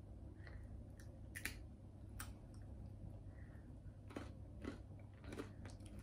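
Faint chewing of a sesame-seed-and-honey candy bar, with scattered small crunches as the seeds are bitten.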